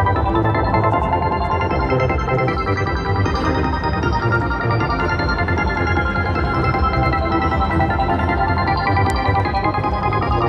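Kronos video slot machine playing its electronic win music as the credit meter counts up after a winning spin, a dense layered tune at a steady level.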